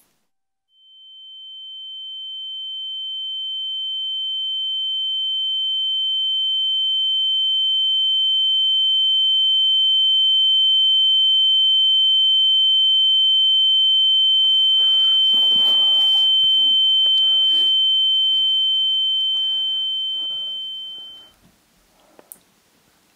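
A single steady high-pitched electronic tone, a pure whine, swells in slowly over several seconds, holds at full level, then fades out quickly near the end. Faint crackling noise and clicks sit under it in its last several seconds.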